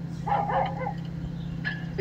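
A dog barking, a short run of barks in the first second, over a steady low hum.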